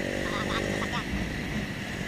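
Motorcycle engine running steadily while riding, with low wind rumble on the microphone.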